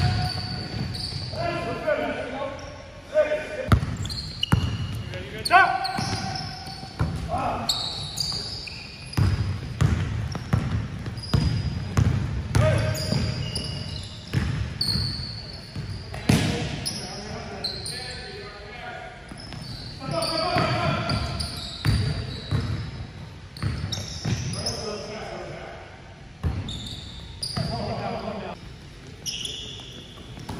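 Men's league basketball game on a hardwood court: the ball bouncing repeatedly, sneakers squeaking in short high chirps, and players calling out, echoing in a large gym.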